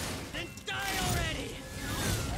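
Sound effects from an animated superhero fight scene: a sharp hit at the start, then a low rumble and a tone sliding down in pitch.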